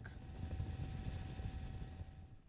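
Low, steady rumble of a news helicopter's rotor and engine, with a faint steady tone above it that cuts off near the end.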